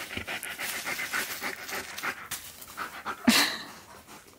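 A husky-malamute cross panting rapidly through an open mouth in an even rhythm, worn out after play. About three seconds in comes one short, louder sound.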